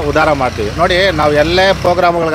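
Speech only: a man talking continuously in Kannada.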